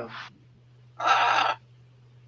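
Blue-and-gold macaw giving a single loud, harsh squawk about half a second long, about a second in.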